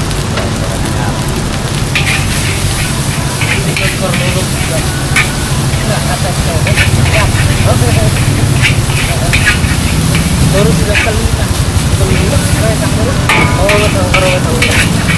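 Nasi goreng (Indonesian fried rice) sizzling in a large wok over a gas flame, with a metal spatula scraping and clinking against the wok as it is stirred, the strikes coming more often in the second half.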